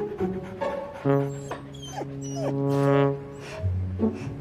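A Samoyed dog whimpering in a few short yips, over background music holding one long note.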